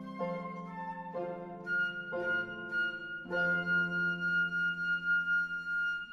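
Flute and harp playing together: the harp strikes four chords about a second apart, and the flute holds one long high note with vibrato from about two seconds in. Both stop together at the very end, the close of the piece.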